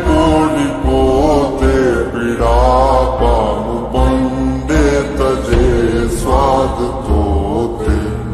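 Gujarati devotional song: a melody with sliding, wavering notes over a deep bass and rhythm.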